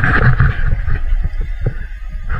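Handling noise from a handheld camera being swung around: a loud, uneven low rumble with small knocks on the microphone.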